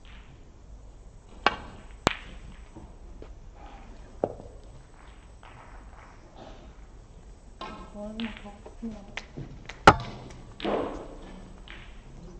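Snooker balls clicking: the cue tip strikes the cue ball and another sharp click follows about half a second later as it meets an object ball, then a softer knock of a ball a couple of seconds after. Near the end there is a single loud sharp click of ball on ball.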